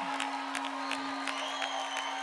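Background music with a steady fast beat, about four to five ticks a second, over one held low tone.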